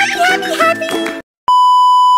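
Music with a high, wavering voice that breaks off a little over a second in. After a brief silence comes a steady, loud single-pitch test-tone beep, the kind that goes with a TV colour-bar screen.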